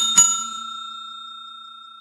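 Notification-bell sound effect for a subscribe animation: a bright bell dings twice in quick succession, then rings on and slowly fades.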